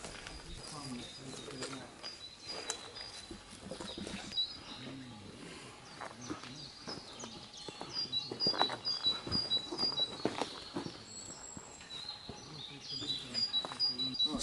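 A small songbird calling runs of short, high notes that alternate between two pitches, in three bursts. Beneath it are scattered footsteps on leaf litter and faint, distant voices.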